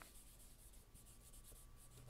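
Very faint rubbing of graphite onto drawing paper with a soft cloth, in light repeated strokes.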